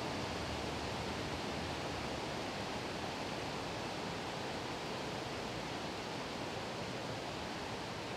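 Water pouring over a river weir, a steady, even rush with no change throughout.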